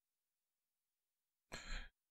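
Near silence, then one short breath near the end, a sigh-like exhale into the microphone.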